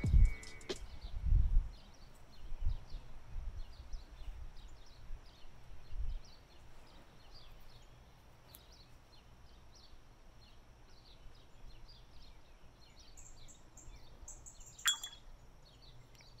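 Small birds chirping over and over in the background of a quiet outdoor hush. A few low thumps come in the first six seconds, and background music dies away within the first second.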